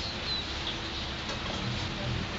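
Steady background noise with two faint, short, high chirps in the first second.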